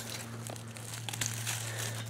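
Faint rustling of tomato foliage and dry leaf mulch as a hand works in among the stems, with a few light clicks and a steady low hum underneath.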